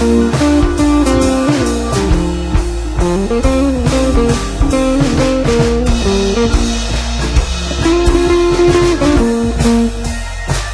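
Background music: a guitar-led tune with bass and a drum kit, playing steadily.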